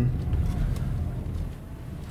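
Car cabin noise while driving: a steady low rumble of engine and tyres that eases off toward the end.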